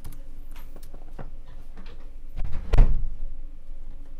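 A few light clicks, then a single dull thump nearly three seconds in: a vocal booth door shutting.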